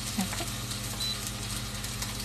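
Chicken breasts frying in a cast iron skillet, a steady sizzle, over the low steady hum of a running microwave.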